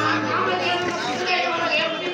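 Several voices talking over one another, a babble of chatter. A low steady hum dies away within the first second.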